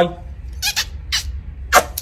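A dog held close to the microphone making three short, breathy sounds about half a second apart.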